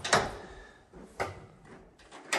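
A heavy front door shutting with a sharp thud that rings on briefly in the hall. About a second later comes a lighter knock.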